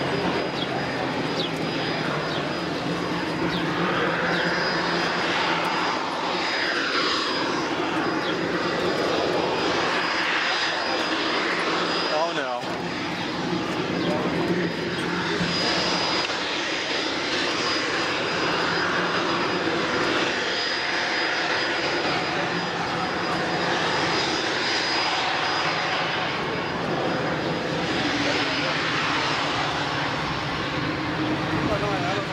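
Fixed-wing airplane's engine running steadily, with sweeping shifts in pitch as the aircraft moves past, strongest in the middle of the stretch.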